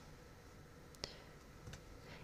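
Near silence of room tone, broken by one short, faint click about a second in.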